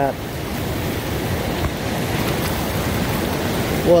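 Steady rush of fast river water through rapids, an even noise with no breaks.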